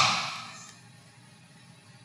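A man's voice trails off at the end of a sentence and dies away, then a pause of near silence with only faint room hiss.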